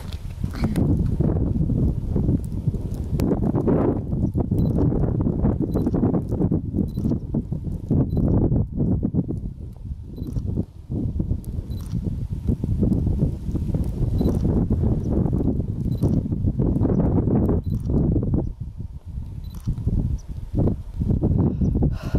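Wind buffeting the microphone in loud, uneven gusts, a heavy low rumble that drops away briefly a few times.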